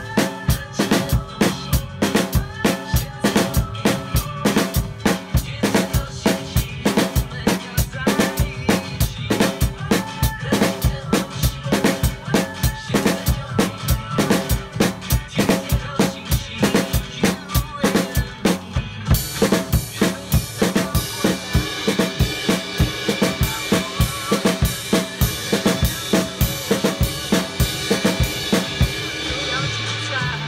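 Acoustic drum kit played in a fast, steady groove of kick drum, snare and hi-hat, over backing music. About two-thirds of the way through, the cymbals open up into a continuous ringing wash above the beat.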